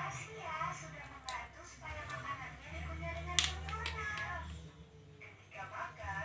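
Indistinct voices talking in the room, with a short cluster of sharp clicks about three and a half seconds in from small parts of the power strip being handled.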